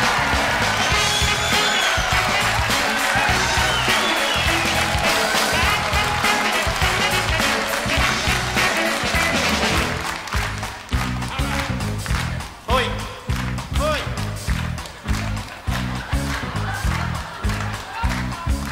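Live band playing an instrumental vamp, with a pulsing bass line and acoustic guitars strumming, under audience applause that fades out about ten seconds in.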